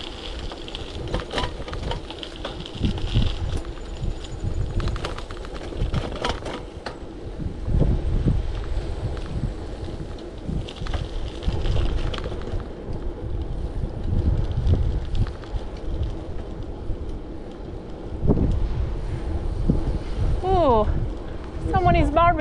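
Wind buffeting the microphone of a bicycle-mounted camera while riding, an uneven low rumble, with scattered rattles and clicks from the bike in the first several seconds.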